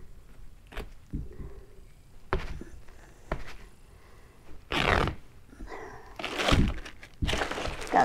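Cloth shipping cover being pulled and handled over a plastic kayak hull, with scattered light knocks and thunks. Louder bursts of rustling come about five seconds in and again near the end.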